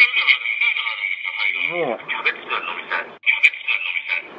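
A phone-call voice recording chopped into short garbled syllables, edited into a stand-in engine idle sound; the pitch slides down once near the middle.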